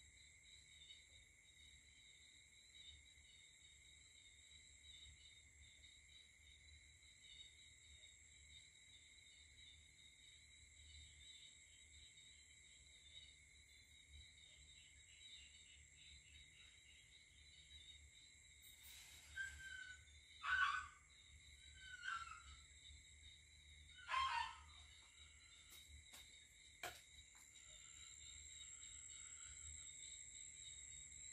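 A steady night chorus of crickets and other insects, faint and high-pitched. About two-thirds of the way in, an animal gives four short calls, a second or two apart, some falling in pitch. A couple of sharp clicks follow.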